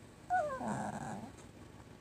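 A Chihuahua gives one short whine that falls in pitch, running straight into a brief raspy vocal sound, about a second long in all.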